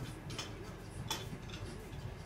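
Clothing rustling as garments are handled and lifted off a pile, with two brief swishes of fabric about half a second and a second in.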